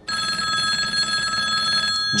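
Telephone ringing: one continuous ring of steady high tones that starts just after the start and cuts off shortly before the end.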